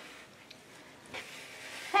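Faint handling of a paper colouring book with a cardboard back: a light tap about half a second in and soft paper-and-card rustling as it is turned over.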